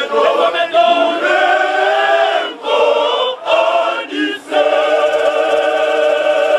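Male choir singing a cappella in harmony, with a few short breaks a little past the middle and a long held chord near the end.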